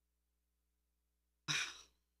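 Near silence, then about one and a half seconds in a man lets out a short, breathy sigh-like "oh".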